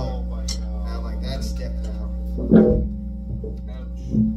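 A single plucked note on an amplified guitar rings out about two and a half seconds in and fades, over a steady amplifier hum.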